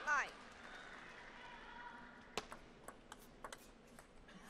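A brief voice call right at the start, then a quiet playing hall. In the last second and a half there are four sharp taps about half a second apart, a table tennis ball being bounced ahead of the next serve.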